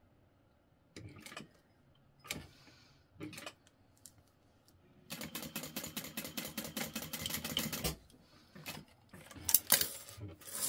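Juki industrial sewing machine stitching a short seam at a fast, even rate for about three seconds, starting about halfway in. Scattered clicks of handling come before it, and a few sharp clicks near the end.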